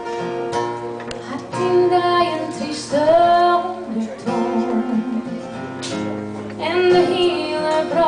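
Live acoustic duo: a woman's singing voice over a strummed acoustic guitar. The guitar plays alone at first, and the voice comes in about a second and a half in.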